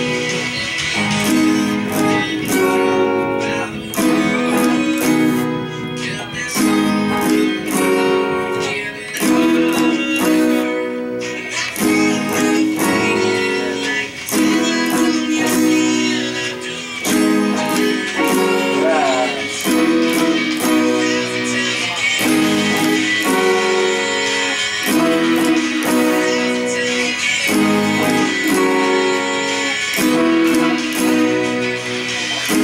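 Acoustic guitar strumming chords in a steady rhythm, with a second guitar playing along.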